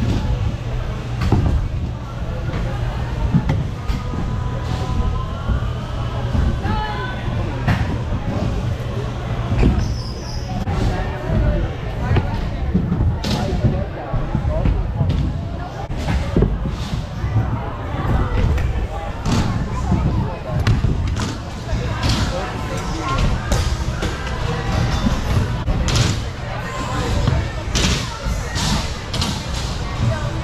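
Stunt scooters at an indoor skatepark: a steady rolling rumble of wheels over concrete and wooden ramps, broken by many sharp thuds and clacks of landings and deck impacts, with voices in the background of the large hall.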